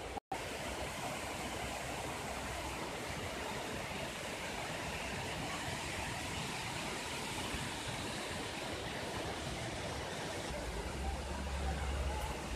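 Mountain creek water rushing over rocks and a small waterfall: a steady, even hiss of flowing water. A low rumble joins near the end.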